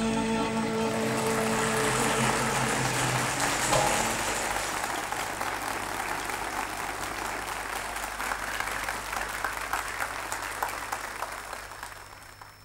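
An audience applauding as a song ends: the music's last held notes fade out in the first few seconds under the clapping, and the applause then slowly dies away near the end.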